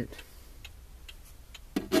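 Hazard-warning flasher in an Iveco truck cab ticking steadily, faint clicks about every half second over the low steady hum of the running engine.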